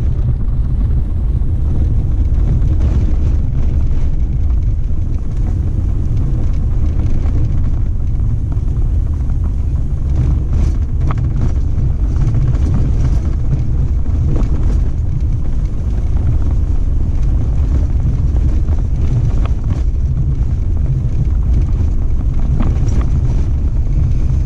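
Vehicle driving along a sandy dirt desert wash: a steady low rumble from the engine and tyres, with a few faint knocks.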